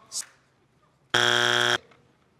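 Game-show wrong-answer buzzer sounding once, a steady harsh buzz about two-thirds of a second long a little past the middle: the answer is not on the board and earns a strike.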